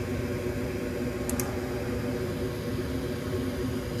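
Gas furnace firing: the inducer draft motor hums steadily with the burners lit, now running normally after the pressure-switch fault was cleared. Two brief faint clicks about a second in.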